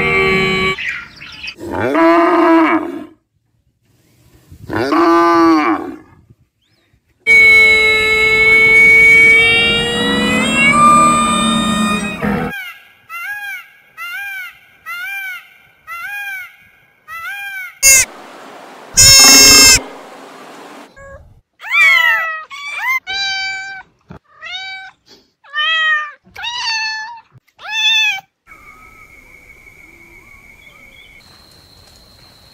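A string of separate animal calls from different animals: two short calls of a camel early on, then a long drawn-out call, then a peacock's repeated short calls about one to two a second in the middle. A loud harsh burst cuts in about two thirds of the way through, followed by another run of repeated calls.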